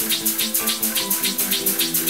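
Small homemade brass oscillating steam engine running on steam, giving rapid even hissing puffs about seven a second, with steam escaping from a leak. Background music with steady held notes plays underneath.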